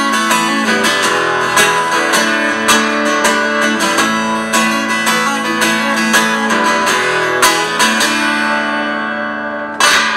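Acoustic guitar strummed solo through the closing instrumental bars of a song, chords struck again and again, then a hard final strum just before the end.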